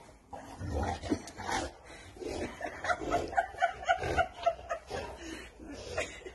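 A dog whining in a quick run of short, high notes in the middle, along with a few dull thumps, while it play-bites and tussles with a person to get him to play.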